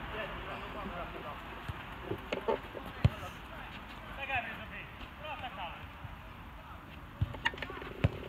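Open-air football pitch ambience: distant players' shouts and calls, with a few short knocks of the ball being struck and one sharp, loud kick about three seconds in.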